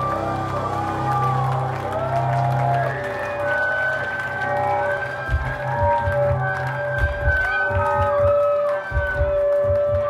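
Live band music with electric guitar and keyboard, sustained wavering tones over a low line. About halfway through, a low pulse begins.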